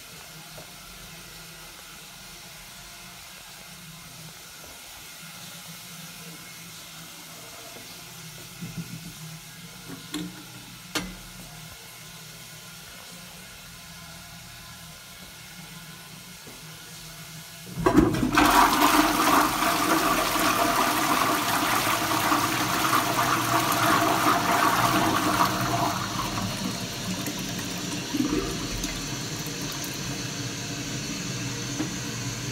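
1980s Armitage Shanks toilet pan in a public toilet being flushed. A few faint knocks come first, then about 18 seconds in a sudden loud rush of water into the pan. It eases after about eight seconds to a quieter, steady run of water as the flush tails off.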